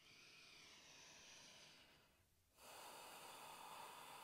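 A woman's faint, slow breathing: one long breath of about two seconds, a short pause, then the next long breath begins.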